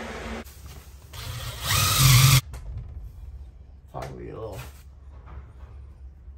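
A power drill run in one short burst of about a second, its motor whining up and then stopping abruptly. A box fan is heard running at the very start.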